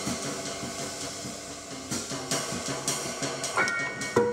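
Small jazz group improvising freely: grand piano and plucked double bass, with scattered cymbal and drum strokes. A piano chord rings out near the end.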